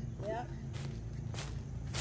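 Footsteps on the dry leaf litter and twigs of a forest floor, a few soft steps while walking toward a tree.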